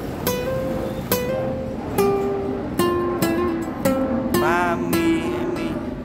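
Nylon-string classical guitar playing a slow single-note melody of about eight plucked notes in the Tây Nguyên (Central Highlands) style, ornamented with hammered-on notes and one string bent up and let back down about four and a half seconds in.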